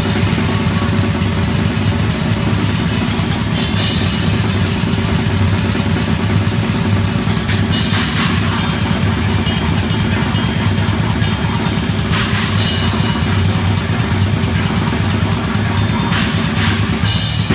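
Pearl drum kit played fast and densely in a live grindcore set, close to the kit, with distorted guitar underneath. Cymbal crashes come roughly every four seconds over the continuous drumming.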